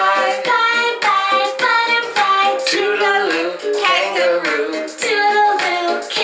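A woman singing a children's goodbye song, one sung syllable after another in a steady, lively pulse.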